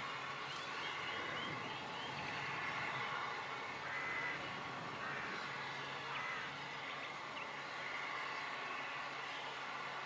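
Low steady background noise with a few faint bird calls and chirps scattered through it.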